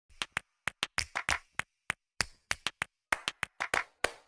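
About twenty sharp hand claps at an uneven pace, some closely bunched, with silent gaps between them.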